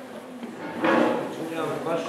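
Indistinct voices of people chatting, louder from about a second in, with a short wavering exclamation near the end.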